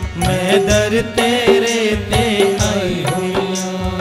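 Hindu devotional bhajan sung live by a male singer in long, gliding phrases, over a steady sustained drone and a regular drum beat.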